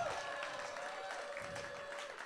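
Faint live audience reaction: light scattered clapping and crowd noise, with one drawn-out voice-like tone through most of it, slowly fading.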